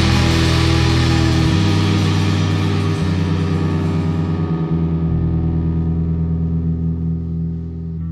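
Live indie rock band: distorted electric guitar with effects and electric bass ringing out in long sustained notes. The bright top of the sound slowly fades away while the bass steps through a few long held notes.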